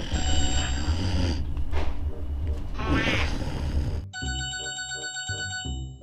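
A basic keypad mobile phone's alarm going off with an electronic ringtone tune, over loud background music. The music drops away about four seconds in, leaving the tune's repeating beeps.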